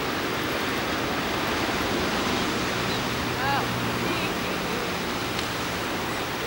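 Surf washing steadily onto a sandy beach, an even rushing noise, with one brief arched cry about three and a half seconds in.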